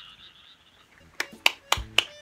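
A high, faintly pulsing frog call fades out in the first half second. After a quiet moment come four quick hand claps, about four a second, in the last second.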